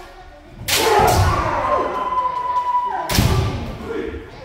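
Kendo practice: a long held kiai shout rises under a second in and lasts about two seconds over other practitioners' shouts. About three seconds in comes a heavy stamping footfall on the wooden dojo floor with shinai strikes.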